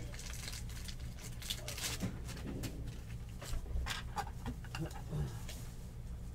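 Trading cards and plastic wrappers being handled on a table: scattered light rustles and clicks over a low steady hum.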